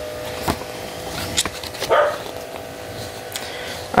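Paper leaflets being handled, giving a few sharp crinkles and clicks over a faint steady hum, with one brief louder sound about two seconds in.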